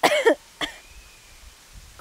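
A woman coughing into her fist: one loud cough, then a shorter, fainter one about half a second later.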